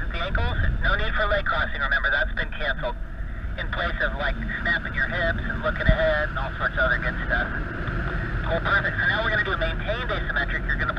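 A voice talking, thin and squeezed into the mid range as over a two-way radio, with a steady low wind rumble on the microphone beneath. There is one short low bump about six seconds in.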